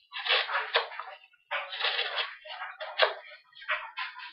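Pocketknife blade slicing through corrugated cardboard in about four separate scratchy cutting strokes, with a couple of sharp clicks among them.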